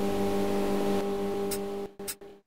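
Steady low hum with overtones over a background hiss, cutting off just before the end.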